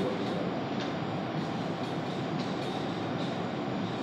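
Steady background noise of a meeting hall, an even hiss and hum with no distinct events.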